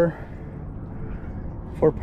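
A man's voice saying "four" at the start and again near the end, with a steady low rumble of background noise in between.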